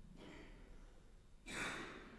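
A person's faint breath, then a louder sigh-like exhale about a second and a half in, against a hushed background.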